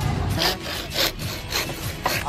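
Bamboo being cut with a hand saw, in quick back-and-forth strokes that begin about half a second in.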